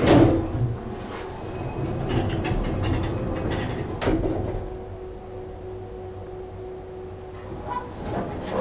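Thyssen elevator's stainless steel car doors sliding open at a landing: a loud clunk at the start, the door operator rumbling for about three seconds, and a knock as the doors reach full open about four seconds in, followed by a steady low hum.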